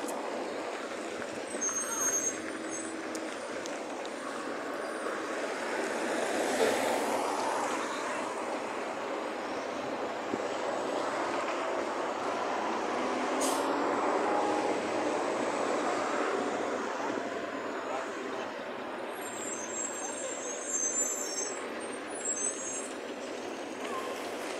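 Street traffic with a truck running, a steady road noise that swells about seven seconds in and again around fourteen seconds as vehicles go by.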